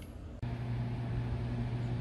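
Quiet room tone that cuts suddenly about half a second in to steady outdoor background noise: an even hiss with a constant low hum.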